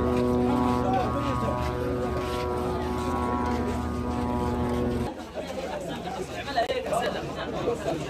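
A steady engine drone with people talking over it; about five seconds in it cuts off abruptly, and a crowd of men's voices talking and calling out fills the rest.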